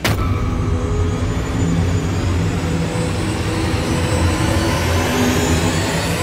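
Dramatic background score: a steady, low rumbling drone with faint held tones above it.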